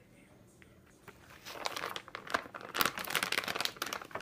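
Plastic food bags crinkling as they are handled. The crinkling starts about a second in and goes on as a dense, irregular run of crackles.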